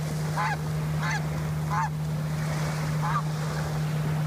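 Juvenile snow goose calling four times in flight, short honks that bend downward in pitch, over a steady low hum.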